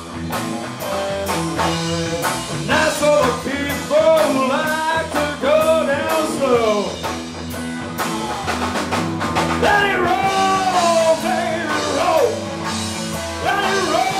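A live rock band playing: electric guitars and a drum kit keeping a steady beat, with a male singer's voice over them.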